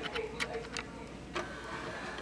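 Cholestech LDX cholesterol analyser opening its cassette drawer at the end of its self test: a faint mechanical whir with a few clicks, about half a second in and again past one second.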